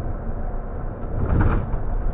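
Intercity coach under way, heard from inside the driver's cab: a steady low engine and road rumble, with a brief louder swell of noise about a second and a half in.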